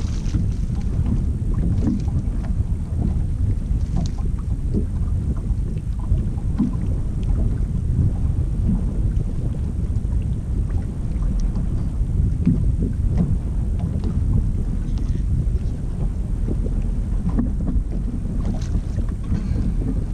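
Wind buffeting the camera's microphone as a steady low rumble, with water lapping against the bass boat's hull and small scattered ticks.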